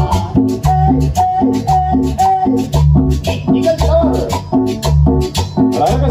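Chanchona band playing an instrumental passage: a bouncing bass line and short repeated violin-range melody notes over steady rattling metal percussion keeping an even beat.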